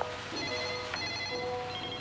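A sequence of electronic tones stepping between pitches, about two or three notes a second, like a telephone ringtone.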